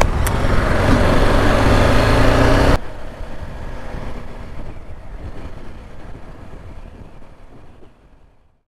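A BMW G310R's single-cylinder engine running on the move, with wind and road noise, heard from the bike. A couple of sharp clicks come at the very start. About three seconds in the sound drops suddenly and then fades away.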